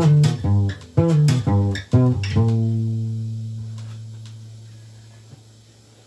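Acoustic guitar playing the closing bars of a song: a few quick strums and plucked notes, then a final chord at about two and a half seconds that is left to ring and fade slowly away.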